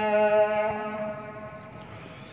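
A muezzin's call to prayer (adhan): the tail of one long note held at a steady pitch, fading out about a second in.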